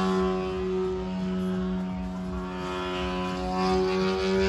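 A small engine running at a steady speed: a continuous hum with a clear pitch that holds level throughout.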